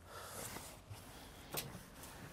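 Faint background hiss with a single light click about one and a half seconds in.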